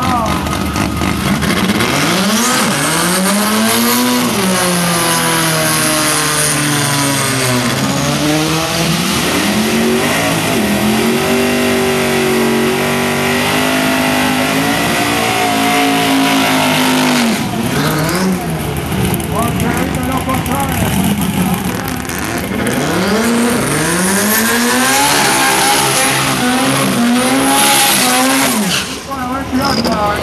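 Car engine revving hard during a burnout, its pitch climbing and falling again and again, over the hiss and squeal of spinning rear tyres. It eases off about halfway through, then revs up again.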